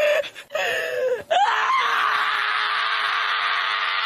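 A dog screaming while it is held and restrained. It gives a couple of short cries, then about a second and a half in one long, loud scream held at a steady pitch.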